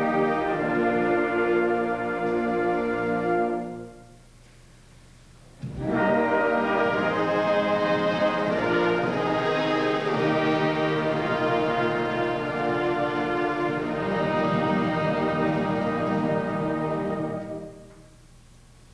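Concert band of brass and woodwinds (tubas, euphoniums, trumpets, clarinets, flutes) playing held chords. The band cuts off about four seconds in, pauses for under two seconds, re-enters together with a sharp attack, and holds long chords until a release near the end.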